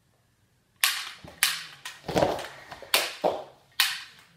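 A rapid, unevenly spaced string of about six sharp gunshot cracks from a toy pistol, starting about a second in, each dying away quickly.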